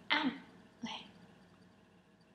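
A girl clearing her throat: two short rasps, the first louder, a little under a second apart.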